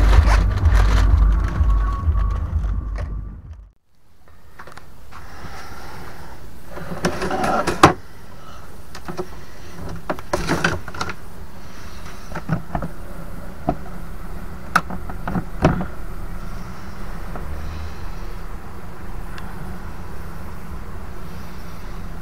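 A camper's hinged window being unlatched and pushed open: scattered clicks and knocks from the plastic latches and frame over a steady faint hiss. Before this, wind rumble on the microphone fades out about four seconds in.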